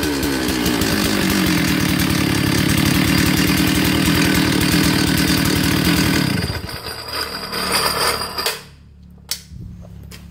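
Stihl 066 Magnum 92cc two-stroke chainsaw engine held at steady high revs on the throttle. About six and a half seconds in it drops back to a quieter, lower running speed, then falls quieter still near the end, with a single click.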